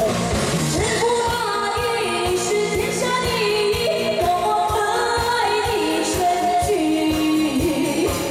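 A woman singing a pop song live into a handheld microphone, over backing music with a steady drum beat; her long held notes slide from one pitch to the next.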